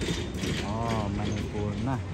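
Busy open-air food-court ambience: a rattle of clicking strikes, then a voice calling out with a rising-and-falling pitch, over a steady low hum.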